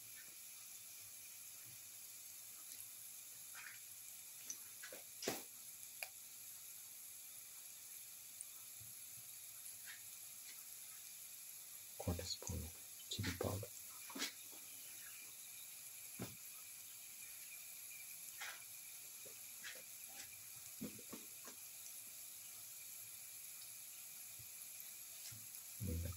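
Hot oil with garlic, onion and spices frying in a pan: a faint, steady sizzle, with a few scattered clicks and knocks, most of them about halfway through.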